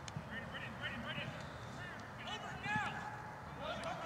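Rugby players shouting and calling across the pitch: a scatter of short, distant shouts with no clear words, over steady outdoor background noise. A single sharp knock sounds just after the start.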